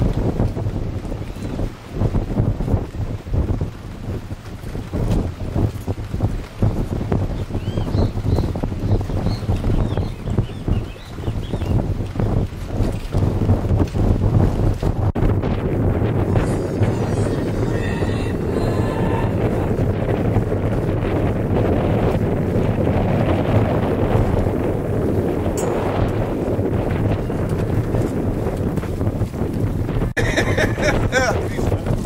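Wind buffeting the microphone aboard a sailboat under way, gusting unevenly at first and settling into a steadier rush from about halfway.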